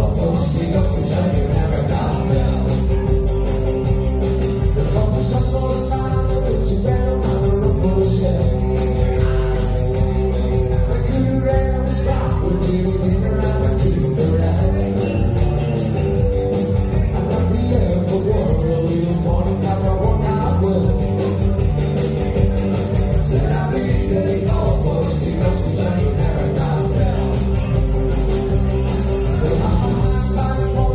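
Live rockabilly band playing a rock and roll number on electric guitar, electric bass and drum kit, with a male lead vocal, at a steady, loud level.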